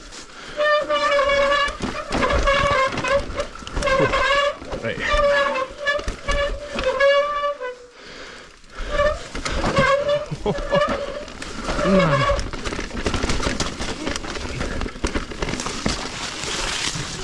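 Mountain bike disc brakes squealing in repeated drawn-out, high pitched squeals as the rider brakes down a steep trail, over the rumble and rattle of tyres and frame on rough dirt. The squeals stop after a short break near the middle and then come back, and die away about three quarters of the way through, leaving only the rolling and rattling.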